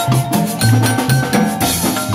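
Live band music: a violin plays held melody notes over a marimba, a double bass and a drum kit keeping a steady dance beat.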